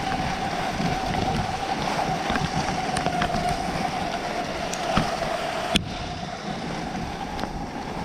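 Cross-country skis gliding fast over groomed snow, with wind buffeting the microphone. A steady hum runs under the hiss until a sharp click about three-quarters of the way through, and small clicks are scattered throughout.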